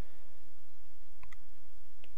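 A few faint, short clicks from a stylus on a drawing tablet as words are handwritten, over a low steady hum.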